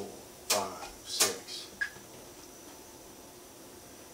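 Electric guitar struck in short, choked chord stabs, evenly spaced about two-thirds of a second apart, with two strokes in the first second and a half. The spacing fits quarter-note triplets, three strokes against two one-second counted beats.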